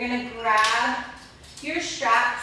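A woman's voice talking.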